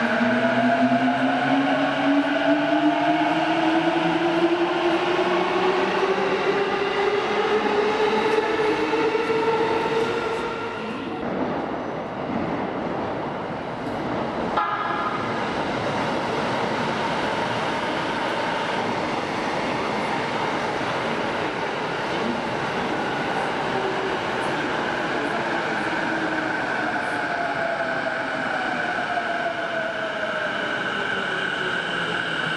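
JR East E233-7000 series electric train pulling out of an underground station, its inverter and traction motors whining in a stack of tones that climbs steadily in pitch as it accelerates. After a sudden change about halfway through, another E233 runs on the far track with steady wheel and rail rumble, its motor tones gliding down in pitch near the end as it slows.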